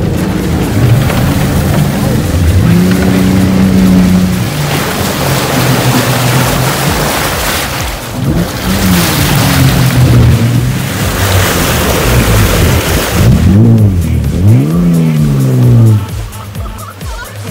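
A 4WD's engine revving up and down under load as it drives through a muddy water hole. Water splashes around the wheels through the middle stretch, and there are sharp rises and falls in engine pitch near the end.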